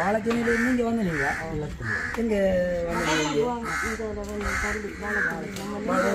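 Several people talking together, with a bird calling in short repeated calls over the voices.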